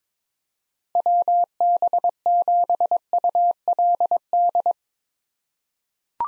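Morse code at 22 words per minute: a single steady tone keyed in dots and dashes, sending the callsign WB7ULD a second time. It starts about a second in and stops near the end.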